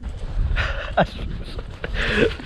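A man laughing breathily, then starting to speak, with wind rumbling on the microphone.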